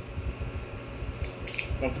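Plastic water bottle being handled while its cap is twisted open, with low handling bumps and a short crackle of plastic about one and a half seconds in.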